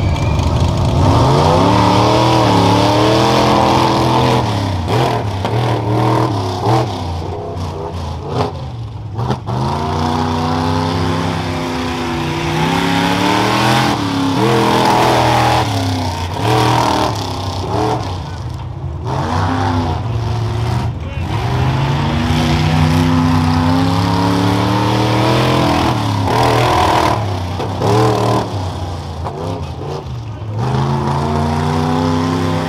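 Modified pickup truck's engine revving hard and repeatedly, its pitch climbing and dropping back several times as the driver opens the throttle and lets off while racing over a rough dirt course.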